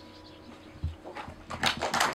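The last guitar chord dies away. A low thump comes about a second in, then scattered hand clapping starts near the end as the song finishes.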